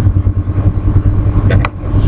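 Steady low rumble with a faint hum underneath, and a few computer-keyboard keystroke clicks about one and a half seconds in.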